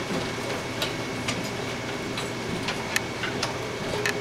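Scattered light clicks and knocks at irregular intervals over a steady room hum with a faint high-pitched whine.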